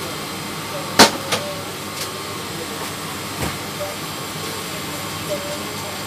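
A cardboard phone box and papers being handled on a desk. There is a sharp knock about a second in and a few lighter taps after it, over a steady background hiss.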